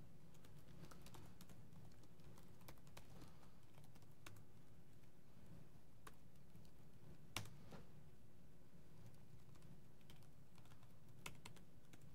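Faint, sparse keystrokes on a laptop keyboard, with one louder click about seven seconds in, over a steady low room hum.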